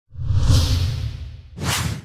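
Whoosh sound effects on an edited news transition. A long whoosh with a deep rumble swells and fades over the first second and a half, then a second, shorter and brighter whoosh comes near the end.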